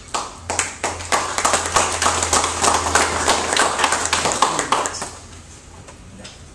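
Small audience applauding, a dense patter of hand claps that dies away about five seconds in.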